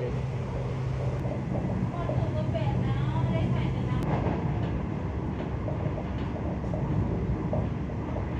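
Steady running noise of a passenger train heard from inside the carriage, with a low steady hum through the first half that fades about four seconds in.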